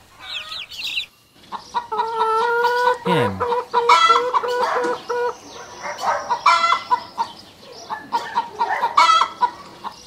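Chicks peep briefly, then a hen clucks repeatedly in runs of short clucks mixed with longer drawn-out calls.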